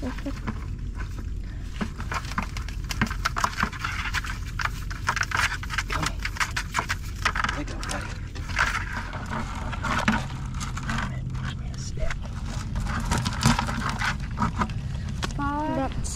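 A blue crab being shaken out of a crab net's mesh into a bucket: irregular rustling and clicking of net and shell against the bucket, over a steady low rumble.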